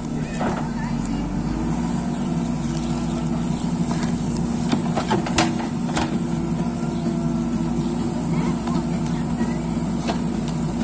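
JCB backhoe loader's diesel engine running steadily as the backhoe digs, with a few sharp knocks near the middle.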